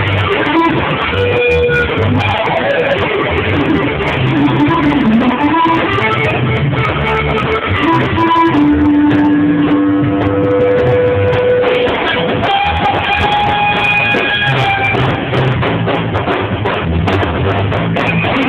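Live band playing loud electric-guitar rock: long held guitar notes, one sliding down and back up about five seconds in, over bass and drums.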